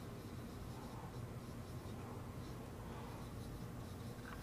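Faint marker strokes on a whiteboard as a heading is written, over a low steady room hum.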